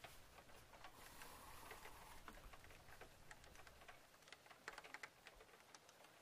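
Near silence: faint, irregular clicks and ticks over a low hiss.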